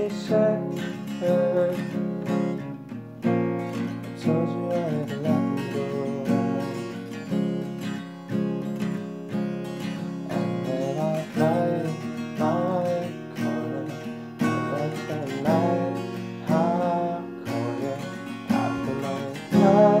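Acoustic guitar strummed in a steady rhythm, playing an instrumental passage of an acoustic pop song cover.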